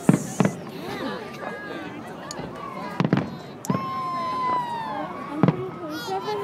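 Aerial fireworks shells bursting: several sharp booms, two close together at the start, then one about three seconds in and another near the end.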